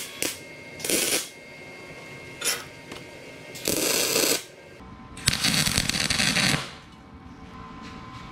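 Electric arc welding on steel tubing: a series of short crackling tack welds, each starting and stopping, the last and longest running over a second.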